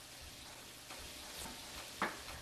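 Faint crackling sizzle of coated green tomato slices shallow-frying in hot oil in a stainless skillet.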